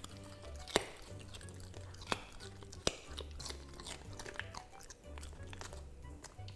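Golden retriever puppy chewing a piece of raw cucumber, with three sharp crunches in the first three seconds and softer chewing after. Soft background music with a low bass line runs underneath.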